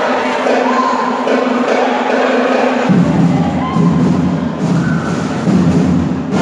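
Fanfarra (brass marching band) playing long held notes, with lower parts coming in about halfway through, over the murmur of a crowd.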